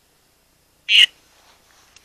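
A single short, tinny, high-pitched burst about a second in from a Necrophonic ghost-box app playing through a phone speaker, which the investigators hear as a voice saying the name "Ed".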